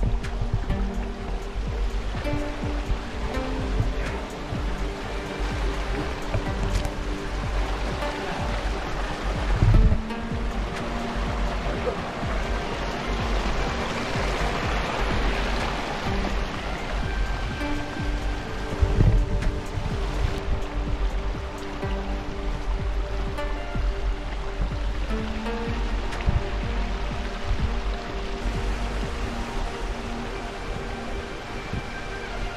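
Background music of held notes that change every few seconds, over a steady low rumble.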